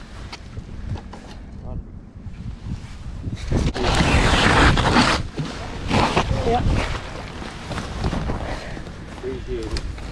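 Wind buffeting a body-worn camera's microphone. From about three and a half to five seconds in there is a loud burst of rustling as jacket fabric rubs against the camera while the angler crouches to land a walleye in a net.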